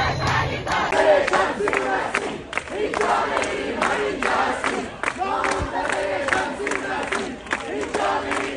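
A crowd of protesters chanting slogans in unison, with rhythmic hand-clapping.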